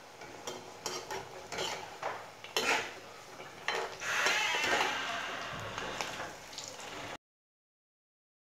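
Besan onion fritters deep-frying in hot oil in a kadai, sizzling, with sharp clinks and scrapes of a metal spoon against the pan. The sizzle swells about four seconds in, and the sound cuts off abruptly near the end.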